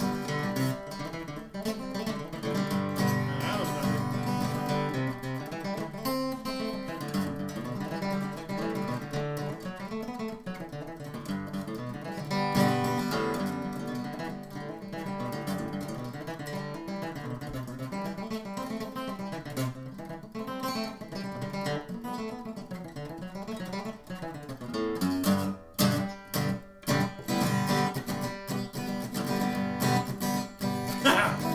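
Steel-string acoustic guitar strummed solo, with chords ringing on. Near the end the strums come as separate, sharper strokes with short gaps between them.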